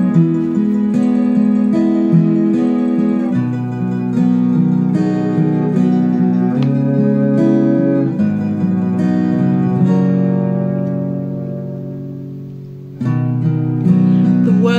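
Acoustic guitar accompaniment playing chords with no voice. It dies away from about ten seconds in and comes back in strongly about a second before the end.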